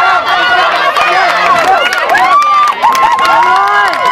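Crowd of spectators shouting and cheering a long touchdown run, many voices overlapping, with one long held yell starting about halfway through.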